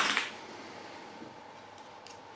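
A single sharp metallic clink of a hand tool against the drill's metal at the very start, dying away quickly, then faint steady room tone.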